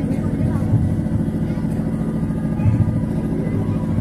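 A steady low rumble with a faint constant electrical hum running through it, with no voices.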